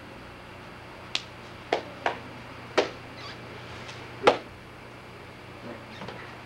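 About five short, sharp clicks or taps at uneven intervals over a steady low hum, the loudest a little past four seconds in.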